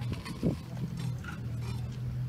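Concert band instruments sounding a held low note and a few scattered short notes while the band waits to start, with a short knock about half a second in.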